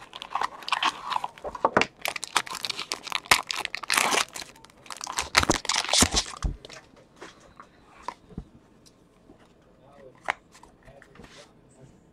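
A trading card pack's wrapper crinkling and tearing as it is ripped open by hand, dense for the first six seconds or so, then thinning to scattered light clicks and rustles as the cards are handled.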